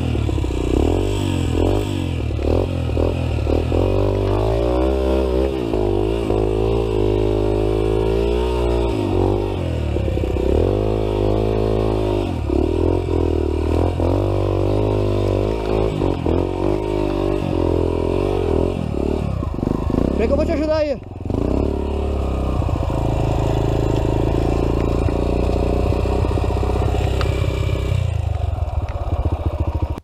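Dirt bike engine revving up and down again and again as it works along a rutted dirt trail. About two-thirds of the way through it dips sharply for a moment, then runs at a steadier pitch.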